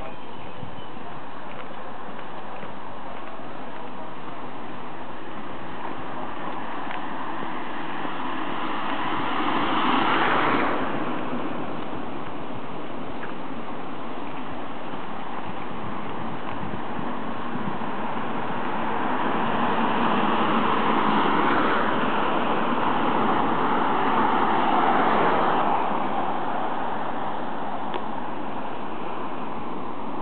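Steady outdoor street noise along a town road. It swells as a car passes about a third of the way in, cutting off sharply, and swells again for several seconds from about two-thirds of the way in as more traffic goes by.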